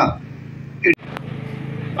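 Steady low background hum in a pause between spoken phrases. Just before a second in there is a short vocal sound, then a brief dropout and a single click.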